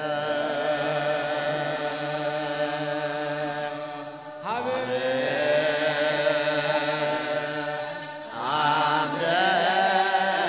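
Ethiopian Orthodox aqwaqwam liturgical chant sung by a chorus in long, held, slowly wavering notes. A new phrase starts about four and a half seconds in and another near eight and a half seconds.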